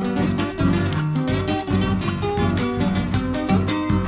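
Instrumental break in an Argentine chacarera: acoustic guitars strumming a steady rhythm and picking a melody over a bass line, with no singing.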